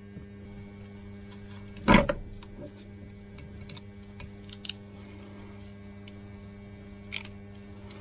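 Scattered metal clicks and clunks as a greasy tractor bevel-gear housing is handled, a screwdriver is set down on the bench and the bevel gear is drawn out. The loudest knock comes about two seconds in, with lighter clicks after it, over a steady low hum.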